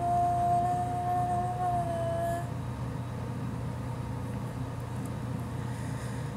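A young woman's voice holding one long sung note, which dips slightly in pitch and stops about two seconds in; after that only a steady low hum remains.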